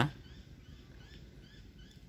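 Faint run of short high chirps from a small bird, about four a second, repeating evenly.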